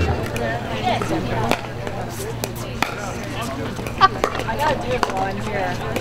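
Pickleball paddles hitting the hollow plastic ball in a rally: short knocks roughly a second apart, over faint spectator chatter.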